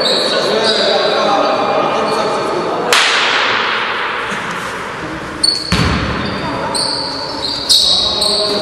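Basketball game in a small echoing gym: the ball bouncing and players calling out, with a few sharp knocks of the ball.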